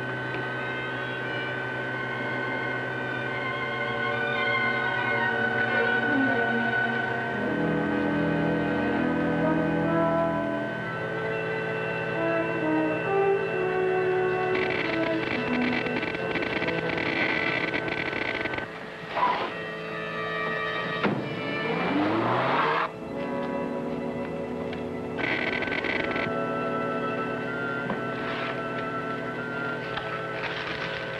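Orchestral film score playing held, dramatic chords. About two-thirds of the way through, a sharp crack is followed by a noisy sound effect that swoops down in pitch and back up before the music carries on.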